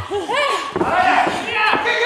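Shouted voices rising and falling over arena crowd noise in a pro-wrestling ring, with a thud from the ring.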